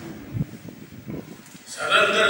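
A man's voice over a public-address microphone starts loudly near the end with a drawn-out, sustained vowel. Before that there are only faint room noise and a few low thuds.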